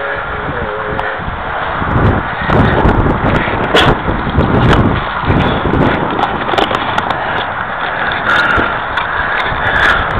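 Wind buffeting the camera microphone in a steady rumble, with scattered sharp knocks and scrapes, thickest in the second half, from handling close to the foam RC plane.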